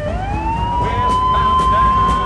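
A siren wailing. Its pitch slides down, swings back up at the start, and holds high and steady, over a low rumble.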